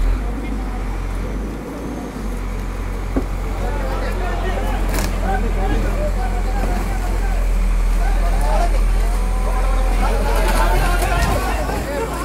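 Backhoe loader's diesel engine running as a steady low drone while it lifts a car on ropes. The drone comes up suddenly at the start, and a crowd of voices calls out over it from about four seconds in.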